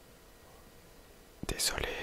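A person whispering close to the microphone, starting about one and a half seconds in, with a sharp click just before the whisper.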